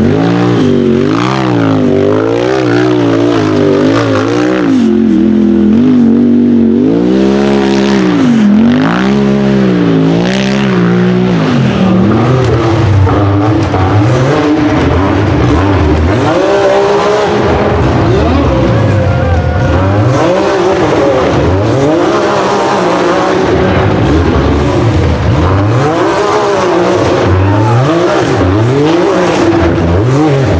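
Hill-climb UTV buggy engine revving hard under full load on a steep dirt climb, its pitch swinging up and down about once a second as the throttle is worked. From about halfway the revving turns more ragged and rapid.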